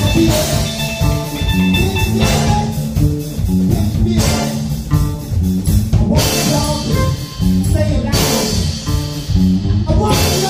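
Live blues band playing: electric guitar and bass line over a drum kit, with a cymbal crash about every two seconds.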